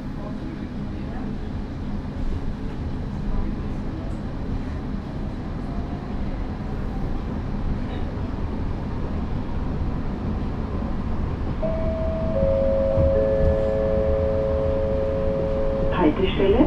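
Interior of a Wiener Lokalbahnen light-rail train pulling away from a stop and gathering speed, the rumble of the running gear on the rails slowly growing louder. Near the end a three-note descending chime sounds, each note held, the signal that precedes an on-board passenger announcement.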